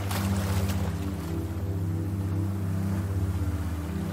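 Meditation background music: a low, sustained synth drone of several held tones, with a soft noisy wash over it that swells briefly in the first second.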